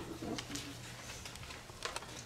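A faint, low cooing bird call, once early on, over quiet room hum.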